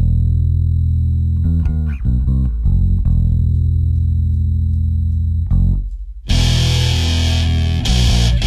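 Black/death metal song: the full band drops out and a bass guitar plays a low riff alone for about six seconds, then the full band with guitars and drums comes back in.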